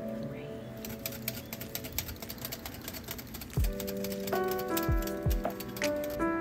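Wire whisk clicking quickly and irregularly against a ceramic bowl while mixing matcha crepe batter. Background music with a beat comes in about halfway through.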